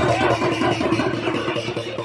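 Stick drumming on large drums, a dense run of strokes, with a crowd's mixed voices underneath.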